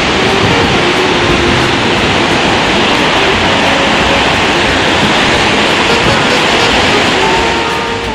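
Heavy ocean surf breaking: a loud, steady rush of whitewater with no separate crashes, easing slightly near the end.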